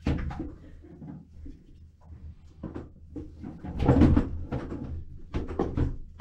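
Irregular knocks and clunks, about ten in all. The loudest is a heavier thump about four seconds in.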